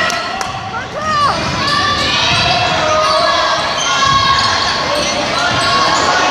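Basketball being dribbled on a hardwood gym floor, sharp bounces over the steady chatter and shouts of spectators echoing in the gym.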